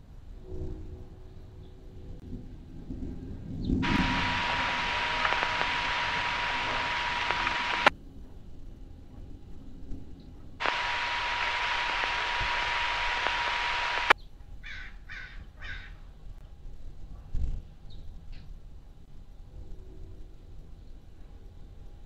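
Marine VHF radio putting out two bursts of static hiss with a steady tone underneath, about four and three and a half seconds long, each starting abruptly and cut off with a click: a transmission keyed with no voice on it.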